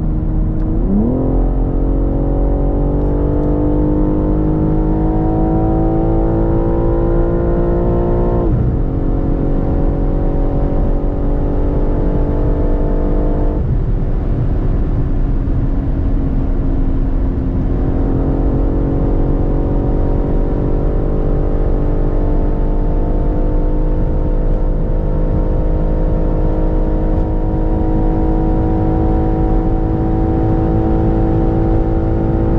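BMW M3 G81 Touring's twin-turbo straight-six at full throttle, heard from inside the cabin on a top-speed run from about 150 to 260 km/h. The engine note jumps up sharply about a second in, then climbs steadily. Gear changes break the climb about eight and fourteen seconds in, and from about eighteen seconds it rises slowly to the end.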